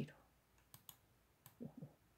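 Near silence in a pause of a reading voice, broken by a few faint, sharp clicks about a second in and again about a second and a half in, and a brief, faint voice-like sound near the end.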